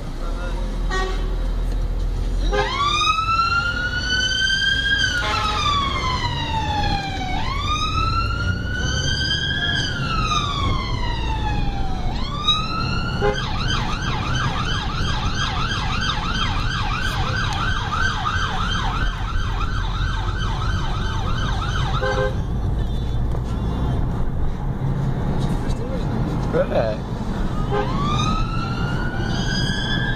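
Emergency vehicle siren heard from inside a car over low engine and road rumble: a slow rising-and-falling wail for about ten seconds, switched to a fast yelp for about nine seconds, then off for several seconds before the wail starts again near the end.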